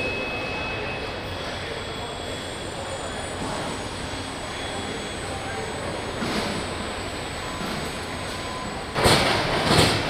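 Car assembly-line factory noise: a steady din of machinery with faint thin whining tones, and a sudden loud burst of rushing noise about nine seconds in, lasting about a second.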